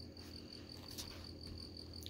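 Faint, continuous high-pitched chirping trill, pulsing evenly like a cricket, over a low steady hum, with one faint tick about halfway through.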